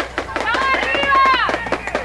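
Shouting voices, high-pitched and drawn out, calling across a youth football game, over scattered short knocks.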